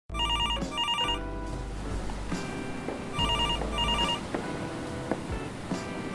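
Telephone ringing in a double-ring pattern, two short trilling rings close together, heard twice about three seconds apart. A faint steady background with a few light clicks lies under it.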